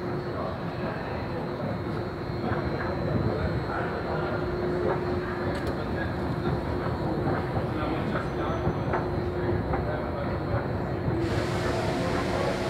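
Underground metro station ambience: a steady rumble with a low hum running through it and a few faint clicks. A brighter hiss sets in near the end.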